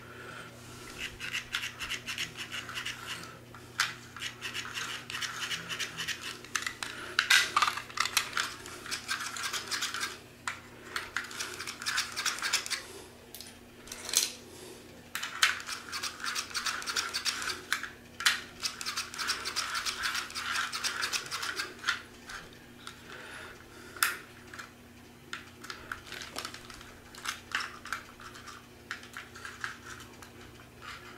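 Plastic HO slot cars rubbed and clicked back and forth on the plastic track, with sharp knocks of cars and controller plugs being handled, over a faint steady hum. The cars get no power, which is put down to corrosion on the track.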